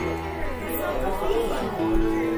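Several people chatting at once over background music with held notes.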